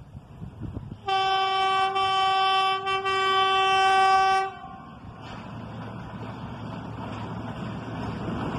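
Railcar train's horn sounding one long steady blast of about three and a half seconds, with a brief dip near the middle, as the train approaches. The rumble of the train on the rails then grows steadily louder as it closes in.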